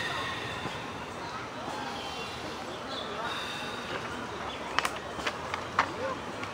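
Outdoor background of indistinct voices, with a few sharp clicks about five seconds in.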